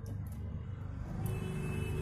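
Low steady rumble of a motor vehicle engine running, growing slightly louder, with faint steady high tones joining about a second in.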